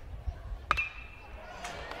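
A metal baseball bat strikes a pitched ball once, about two-thirds of a second in: a sharp ping with a brief metallic ring, over low stadium crowd noise.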